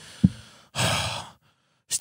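A man sighs into a close handheld microphone: a short voiced catch about a quarter second in, then a breathy exhale of about half a second.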